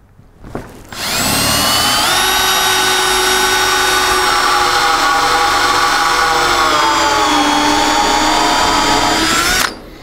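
Cordless drill with a step drill bit boring a hole through a wooden truck bed board: a steady motor whine that starts about a second in, climbs in pitch a second later, sags slightly while it cuts and stops just before the end. The step bit is taken through far enough to leave a small pilot hole on the far side of the board.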